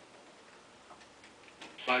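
A few faint, sparse keyboard key clicks, then a screen reader's synthesized voice starts reading the save dialog near the end ("File…").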